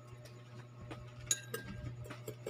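A metal spoon clinking once against a hard surface about a second and a half in, leaving a short ring, over a faint steady low hum.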